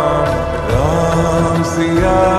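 Hindu devotional song (bhajan) with a sung line sliding upward in pitch about two-thirds of a second in, over steady instrumental backing.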